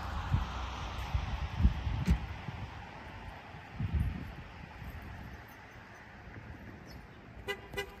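A car horn gives two short toots close together near the end, over a faint hiss; a few dull low thumps come earlier.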